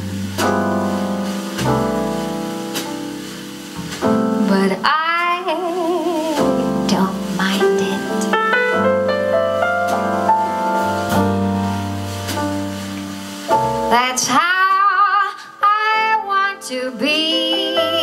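Live jazz: a female singer with piano and upright bass accompaniment. She sings held notes with vibrato in two phrases, one about five seconds in and one near the end, over sustained piano chords and walking bass notes.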